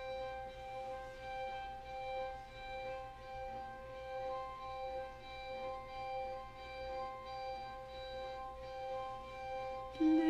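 String quartet playing a quiet, sustained high chord of held notes that swells and fades gently about once a second, the introduction to a song.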